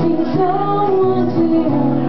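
Live music: a woman singing a melody over acoustic guitar accompaniment.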